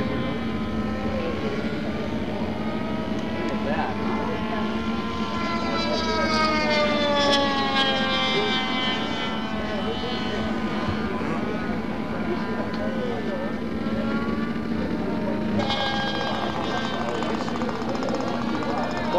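Small engine of a radio-controlled model powered parachute running with a steady drone, its pitch sliding slowly down and back up as the model comes in to land.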